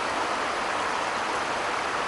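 Steady rushing of a stream swollen in flood: an even, unbroken noise of running water.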